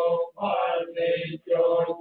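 Buddhist monks' chanting: male voices reciting on a nearly level, monotone pitch, syllable after syllable, with short pauses for breath.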